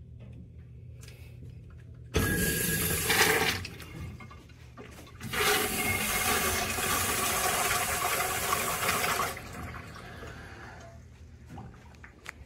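Kohler Dexter urinal flushed by its manual flush valve: a sudden rush of water about two seconds in, then a second, longer rush of water for about four seconds that tails off as the bowl refills.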